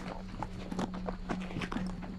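A run of irregular light clicks and taps, several a second, over a steady low hum.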